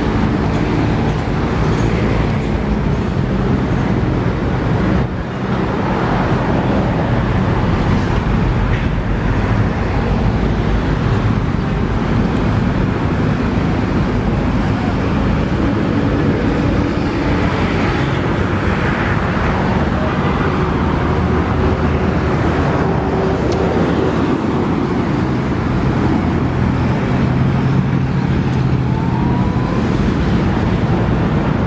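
Steady din of busy road traffic, a continuous engine hum with no break.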